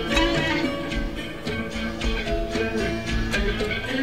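Live rock band music, with plucked electric guitar notes ringing over bass and percussion.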